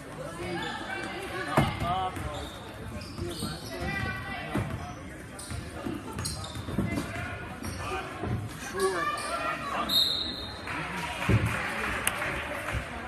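Basketball bouncing on a hardwood gym floor as it is dribbled, several echoing thumps at uneven intervals, over the voices of spectators in the hall.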